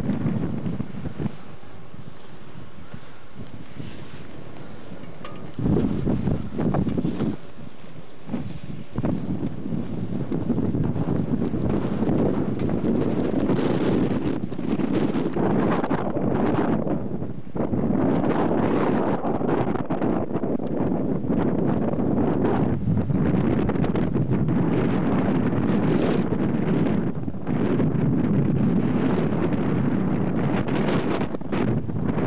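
Wind buffeting the camcorder microphone, a low rushing noise that comes in gusts. It is quieter for the first few seconds and loud, nearly continuous, from about ten seconds in.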